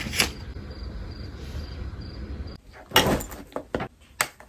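A page of a spiral-bound desk calendar flipping over, then a steady low hum. About three seconds in comes a short scrape followed by a few light clicks as a tablet and stylus are handled.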